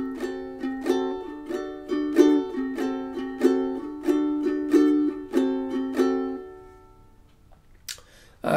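Ukulele strummed in a quick down-up pattern, switching between D and D7 chords. The last chord rings out and fades away over the final couple of seconds.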